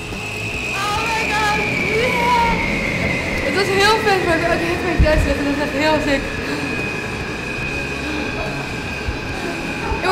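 An indoor skydiving wind tunnel's fans running with a steady high whine over a low rumble. Excited high-pitched voices sound over it, mostly in the first half.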